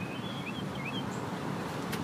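Outdoor background: a steady low rumble, with a small bird chirping faintly in short notes during the first second.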